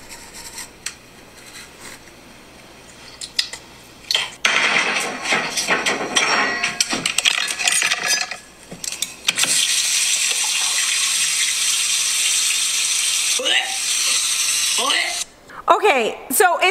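Toothbrushing video audio played through a phone's speaker. First comes a short stretch of scrubbing noise. Then a tap runs loudly and steadily while a woman makes a few throaty yakking noises, and it all cuts off suddenly near the end.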